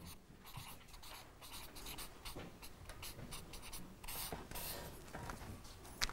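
Marker pen writing on a flip-chart pad: a run of faint, scratchy strokes.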